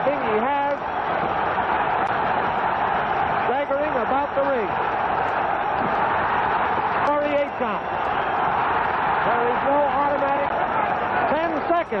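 Arena crowd at a boxing match roaring steadily during a knockdown, with a man's voice calling out in short stretches over it, on an old broadcast recording.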